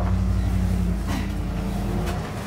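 A steady low motor hum with no speech over it; its highest tone drops out about a second in.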